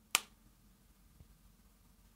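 Sharp click of a Wegovy (semaglutide) auto-injector pen firing as it is pressed against the belly to start the 1.7 mg dose, followed by a faint tick about a second later.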